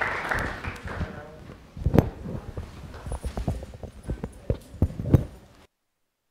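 Applause and voices fading out over the first second, then a string of irregular knocks and rubbing thumps from a clip-on lapel microphone being handled and unclipped, loudest about two seconds in and again near five seconds. The sound cuts off abruptly just before the end.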